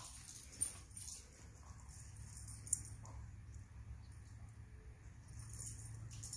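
Quiet outdoor background: a faint low rumble with a couple of soft ticks.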